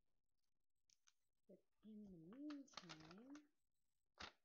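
A woman's wordless two-part hum, each part dipping then rising in pitch, over the crinkle and crackle of a vinyl backing sheet being peeled and handled. Short paper ticks come before it, and it is otherwise very quiet.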